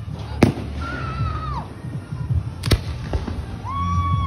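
Aerial fireworks going off: two sharp bangs about two seconds apart. A long high tone is held between them and falls away at its end, and another comes near the end.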